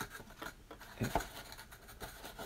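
Faint handling noises from cards and their cardboard box on a table: a light click at the start, then soft scraping and rubbing, with one short spoken word about a second in.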